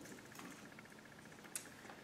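Near silence: quiet room tone, with one faint, brief click about one and a half seconds in.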